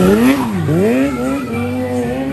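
Sport motorcycle engine revving as the bike passes close by. Its pitch falls steeply over the first half second or so, then climbs again as the throttle opens.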